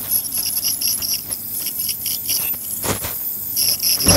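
Ultrasonic dental scaler working along a dog's tartar-covered teeth: a thin high whine with a pulsing chirp that repeats about four to five times a second.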